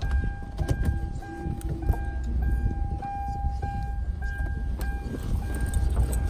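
A car's electronic warning chime beeping steadily, about one and a half beeps a second, over the low rumble of the 2011 Kia Sorento's idling engine, with a few light clicks.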